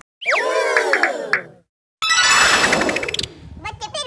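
Comic sound effects laid over the picture: a pitched sound slides downward for about a second and a half, then after a short gap a sudden burst, and near the end a wobbling, warbling tone.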